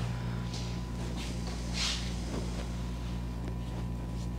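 Soft rustles and swishes of a woven wool-blend jacket being handled and taken off, over a steady low hum.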